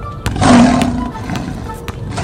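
A loud roar about half a second in, lasting roughly half a second, over background music.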